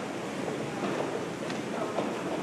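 Floodwater bubbling as it is forced up through vents, a steady noisy wash of water.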